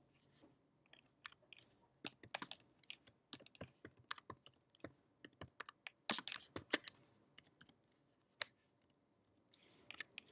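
Keystrokes on a computer keyboard as an address is typed. They come faint and irregular, in short runs with pauses between, and the runs are densest about two and six seconds in.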